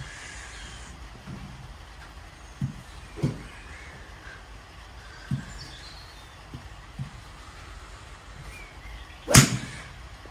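A golf club striking a ball off a driving-range mat about nine seconds in: a single sharp crack, the loudest sound. Before it there are a few soft thumps and faint bird chirps.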